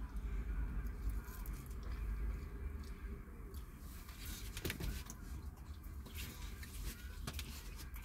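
Quiet car-cabin background: a steady low rumble with faint rustling and small handling clicks, and one sharper click a little under five seconds in.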